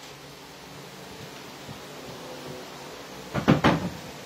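A short clatter of knocks about three and a half seconds in as a pedestal fan is handled and set in place on the floor, over a low steady hum.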